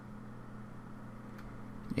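Low steady hum with faint hiss: the room tone of a recording microphone, with one faint click about one and a half seconds in.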